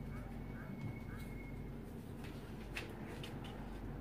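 A few light taps and paper rustles as a plastic ruler and pen are set down on pattern paper, mostly a couple of seconds in, over a steady low hum.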